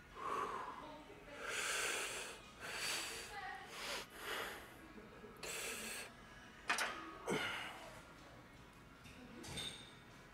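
A man taking a series of hard, forceful breaths, about seven in all, as he braces under a loaded barbell before lifting. Two short, sharp sounds come about two-thirds of the way through and are the loudest moments.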